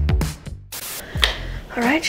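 Background music with a steady beat of sharp, snap-like strokes, cutting off about half a second in; a short hiss and a click follow, then a woman starts talking near the end.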